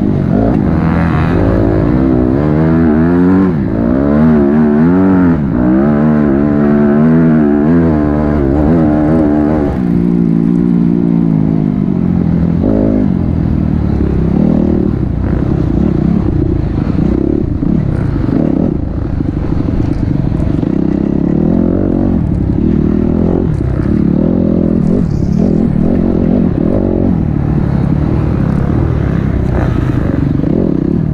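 Onboard sound of a dirt bike engine ridden hard, its pitch rising and falling over and over with the throttle and gear changes. After about ten seconds the engine note turns rougher and less clear, mixed with noise from the rough track.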